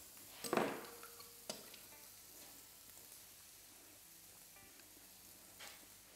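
Chicken breasts sizzling faintly on a hot barbecue grill plate, with a brief louder spoon-and-bowl sound about half a second in and a light tap a second later.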